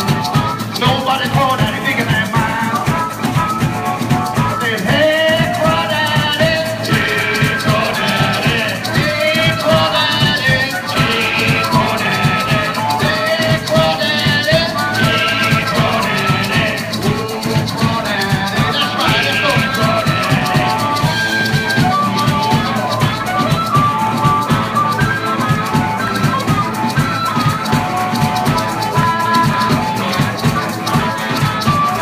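Live blues-rock band playing an instrumental break: a harmonica solo with bending notes over electric guitar, bass and drums, with maracas shaken throughout.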